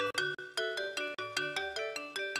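Background film music: a quick, steady run of bright struck keyboard notes, several a second, over a low bass line.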